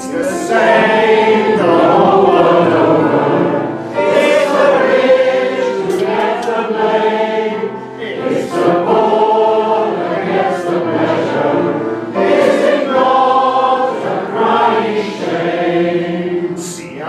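Many voices singing a chorus together, in four sung lines of about four seconds each.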